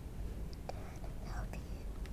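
Faint whispered muttering under the breath, with a couple of light taps of a marker against the whiteboard screen.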